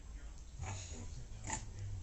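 A dog making two short sounds, about half a second in and again about a second and a half in.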